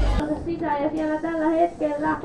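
Music with a heavy bass beat cuts off abruptly just after the start. Then a high voice sings or calls out in short, held, sing-song notes.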